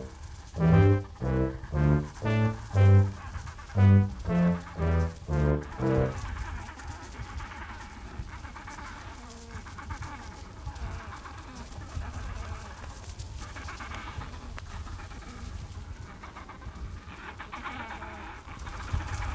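Background music: a bouncing tune of short, low notes, about two a second, for the first six seconds, then fading to a faint, quiet backdrop.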